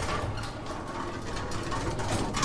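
Rapid, steady run of mechanical clicking, like a ratchet or turning gears: an outro sound effect for an animated end-title logo.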